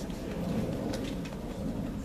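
Steady low rumble of outdoor background noise, with a faint click about a second in.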